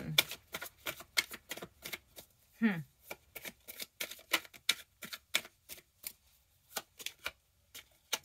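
A tarot deck being shuffled by hand: a run of quick, crisp card snaps, about three or four a second, with a short pause near the end.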